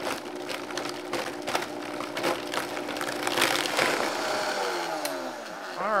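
High-powered countertop blender running, blending tomato sauce ingredients, with a steady motor hum; from about two-thirds of the way through, its pitch falls steadily as the motor is switched off and winds down.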